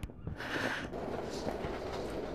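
Station ambience: a steady low hum and hiss of a transport hub, with a few faint knocks.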